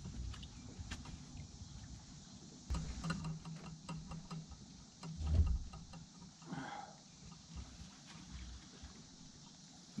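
Bare feet thumping on a boat's wooden plank deck and fishing gear knocking as a rod is lifted from its holder, with scattered light clicks; a dull thump about five seconds in is the loudest.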